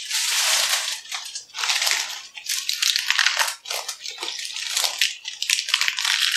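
Crisp lettuce leaves being bitten and chewed fast, a loud crunching that comes in irregular bursts with short breaks.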